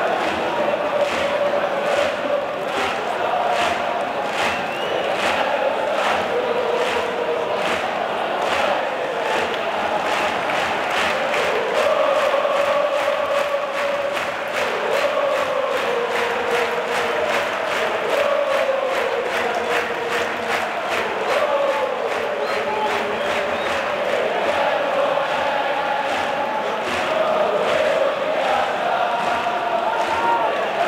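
Football ultras in a stadium stand singing a chant together, with rhythmic hand-clapping in time that speeds up from about ten seconds in.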